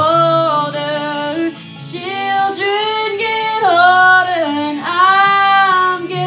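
A woman singing long held notes that slide from one pitch to the next, loud and emotive, over a guitar accompaniment.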